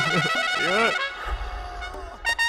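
Film background music with a fast, ringing trill in the high notes. In the first second a man's voice gives two short rising-and-falling groans.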